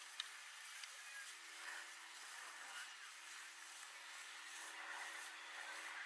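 Faint outdoor background noise with a steady low hum, a few clicks right at the start.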